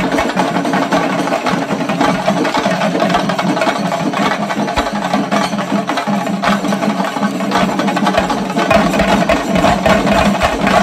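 A group of chenda drums beaten with sticks, playing a fast, dense, unbroken rhythm.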